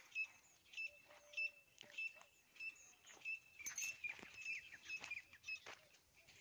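Several birds calling: a short high chirp repeated roughly every half second, with a few lower notes and some faint clicks in between.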